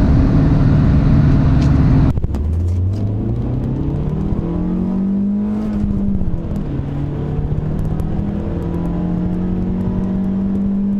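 Car engine and road noise heard from inside the cabin while driving at speed, cut off abruptly about two seconds in. Then another car's engine, also heard from inside the cabin, rises slowly in revs, dips briefly around six seconds and holds a steady higher note.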